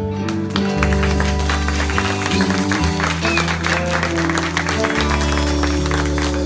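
Live band with guitars playing sustained chords while audience applause builds from about half a second in.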